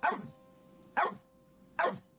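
A dog barking three times: once right at the start, once about a second in, and once near the end.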